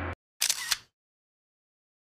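A sustained ringing tone cuts off abruptly at the start. About half a second in comes a brief edited sound effect of two sharp clicks a quarter second apart, followed by dead silence.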